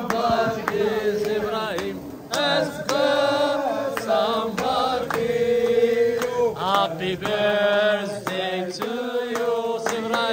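Singing with music: a melodic vocal line of long held and gliding notes, without spoken words.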